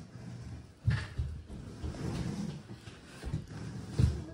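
Handling noise: a sharp knock about a second in, followed by irregular soft low bumps.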